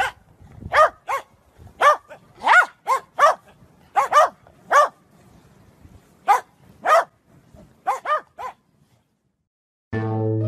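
A dog barking: a string of about fourteen short, high-pitched barks, some single and some in quick pairs, which stop about a second and a half before the end.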